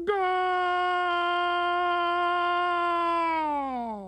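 A football commentator's long drawn-out "Goal!" call: one loud shouted note held steady for nearly four seconds, dropping in pitch as it fades near the end.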